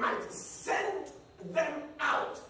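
A man's voice shouting in short, loud bursts, about one every half second, during a sermon.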